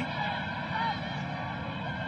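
Steady stadium background noise from a televised soccer match, with a brief faint call about a second in.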